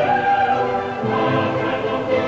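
Choral music on the soundtrack: voices singing long held chords that change about once a second.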